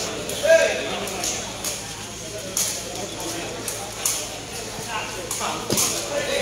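A sepak takraw ball being kicked back and forth in a rally: several sharp knocks, irregular and about a second apart, over steady crowd chatter and calls.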